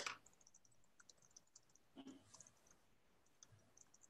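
Near silence with faint, scattered clicks of a computer mouse being used to scroll through presentation slides; the sharpest click comes right at the start.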